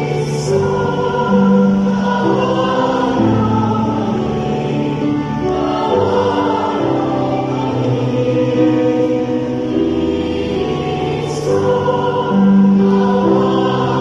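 Mixed church choir singing a Mass hymn in harmony, with notes held for a second or two, accompanied by an electronic keyboard.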